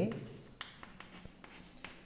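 Chalk writing on a chalkboard: a few faint short strokes and taps.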